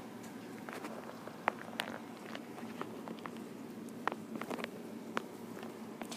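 Faint, irregular small clicks and scratches of a bearded dragon's claws on fleece bedding as it crawls about.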